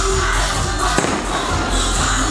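Music with a steady low beat, and a firework bursting with one sharp bang about a second in.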